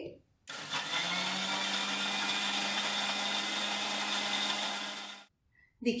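Electric mixer grinder blending soaked oats, banana and water in its steel jar into a smoothie. It gives a steady motor hum that starts about half a second in and stops about a second before the end.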